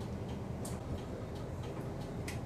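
Turn-signal relay of a city bus clicking, a few sharp ticks a second, over the low hum of the bus's idling engine while it waits at a red light.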